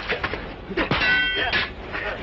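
Metal weapons clashing in a film fight: a single clang about halfway through that rings for about half a second, with a man's grunt just before it and scuffling noise around it.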